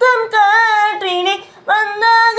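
A woman's voice singing a melodic phrase of a Tamil film song, with a short breath about three-quarters of the way through before a new held note begins.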